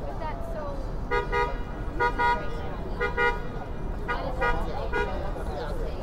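A horn tooting in quick double beeps, repeated about once a second, five times over, above crowd chatter.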